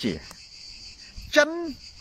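A chorus of insects chirring, a steady high-pitched drone that runs on unbroken under the talk.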